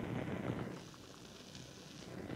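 Faint hiss with a low hum from an active studio monitor that has nothing playing, picked up right at its woofer, growing fainter about a second in. It is computer noise coming through from the audio interface over an unbalanced cable.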